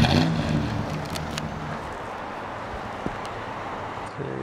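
A motor vehicle's engine hum, loudest at the start and fading away over the first second or two, as if the vehicle is moving off. A few crunching footsteps on gravel follow over a steady rushing background.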